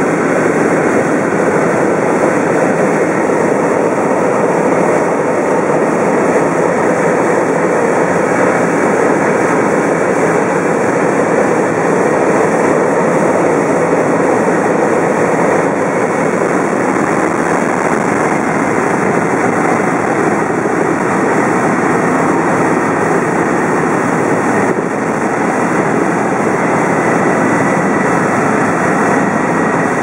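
Helicopter engine and rotor noise heard steadily from inside the cabin in cruising flight: a dense, unbroken drone with faint steady whines over it.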